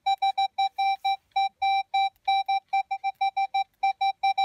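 Metal detector giving a target signal: a high-pitched tone beeping rapidly in short, uneven pulses, about six a second, as the search coil passes over buried metal. It is a strong, clean signal that marks a target worth digging.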